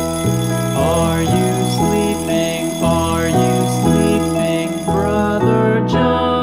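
An alarm clock's bell ringing continuously over cheerful children's background music with a stepping bass line and keyboard melody; the ringing cuts off suddenly near the end.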